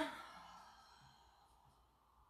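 A woman's audible out-breath through the mouth, a sigh-like exhale that fades away over about a second as she folds forward into a stretch.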